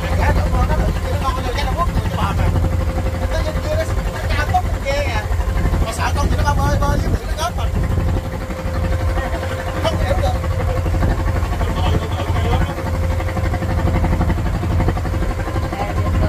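Small wooden boat's engine running steadily under way, a continuous low drone with a constant hum above it. Indistinct voices talk over it at times.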